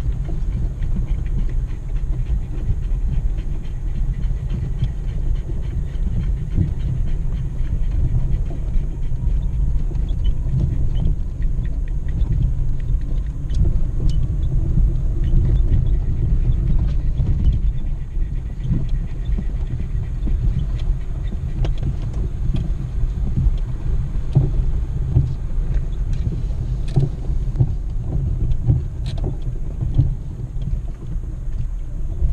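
In-cab sound of a Jeep Grand Cherokee ZJ crawling over a rocky dirt trail: a steady low rumble of engine and tyres on gravel, with a few scattered small clicks and knocks.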